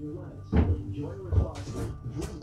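Two dull knocks, then a short hiss of water as the bathroom vanity faucet is turned on.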